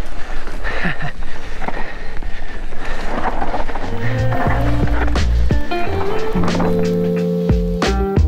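Mountain bike descending fast on loose dirt singletrack, heard on the rider's camera: a rushing haze of tyre and wind noise with scattered knocks. From about halfway, background music with a bass line takes over.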